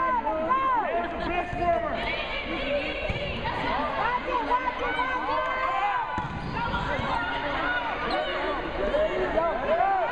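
Several voices calling and shouting over one another during a volleyball rally in a large gymnasium. A volleyball bounces on the hardwood court.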